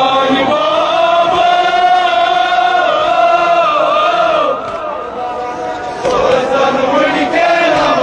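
A crowd of men chanting a Kashmiri noha, a mourning lament, in unison. They hold one long line for about four and a half seconds, pause briefly, and start again about six seconds in.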